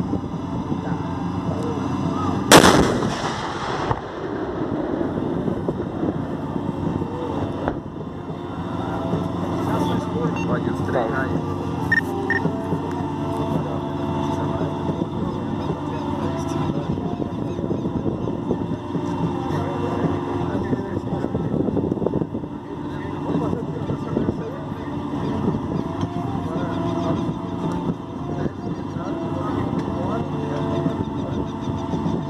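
A single loud cannon shot from an EE-9 Cascavel armoured car's 90 mm gun, about two and a half seconds in, ringing out for over a second. The armoured vehicles' engines run steadily underneath.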